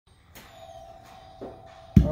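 A faint steady tone from a guitar plugged into a Gibson GA-55RVT tube amp, with a couple of light knocks, then a sharp thump near the end.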